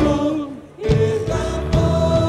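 Worship band and group of singers performing a Portuguese-language worship song with held sung notes. A sung phrase fades out, then voices and band come back in with drum strikes just under a second in.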